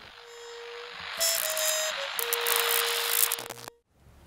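Electronic sound effect: a hiss like static swells up beneath a steady electronic tone, which briefly steps higher before settling back. The whole sound cuts off suddenly just before the end.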